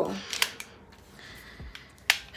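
A couple of sharp plastic clicks about half a second in, then soft knocks near the end, from the plastic phone clamp of a mini tripod being handled.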